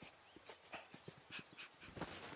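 Faint, dog-like panting and sniffing from a small boy, in a few short breathy puffs, with soft scuffs in the dirt.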